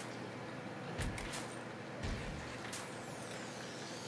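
Steady low background hiss of room noise, with two soft taps from handling about one and two seconds in.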